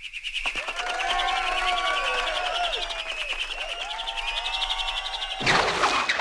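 Cartoon sound effect of a baton being twirled fast: a rapid whirring flutter overlaid with many sliding, whistle-like tones, with a louder burst near the end.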